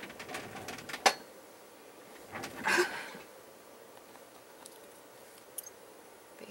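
A single sharp knock about a second in, then a short laugh, and a few faint clicks near the end.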